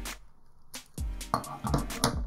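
A few sharp clicks and taps from a plastic Dr. Fix eMMC socket adapter as its chip holder is pulled off the base board, over quiet background music.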